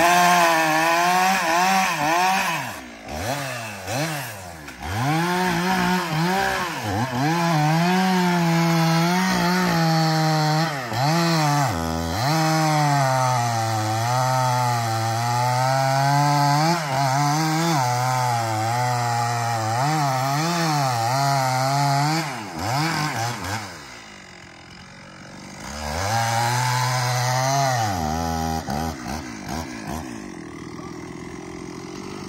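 Chainsaw cutting into the base of a maple trunk, the engine pitch rising and sagging as the chain bites and clears. About 23 s in it drops back to idle for a few seconds, then revs up again and falls back just before the end.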